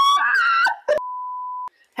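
Laughter and voices for under a second, then a click and one steady high-pitched beep tone about two-thirds of a second long that cuts off suddenly: an edited-in censor bleep.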